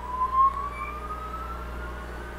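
Creality UW-01 wash station's propeller motor spinning up after being switched to its quick speed, a whine rising steadily in pitch.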